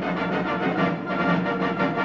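Orchestral film trailer music playing, a busy, fast-moving passage with many instruments.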